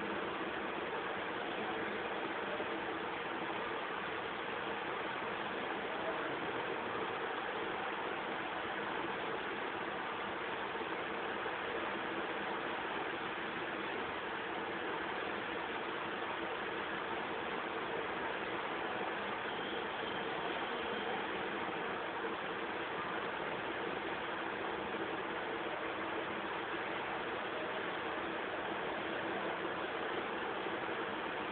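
A steady, even hiss of noise that does not change, with no speech or music.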